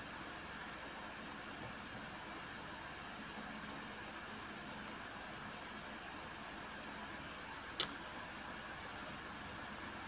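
Steady background hiss of room noise with a faint low hum, broken by a single sharp click near the end.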